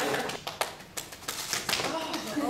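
A few irregular sharp taps, about four in two seconds, over faint voices.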